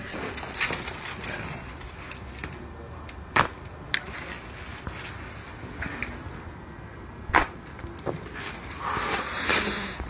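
Quiet room background with rustling and three sharp clicks or taps spread apart, then a longer noisy rush near the end.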